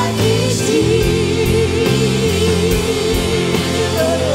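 Live contemporary worship music: a church band with bass, keyboard and drums under a singer holding one long note with vibrato, with other voices singing along.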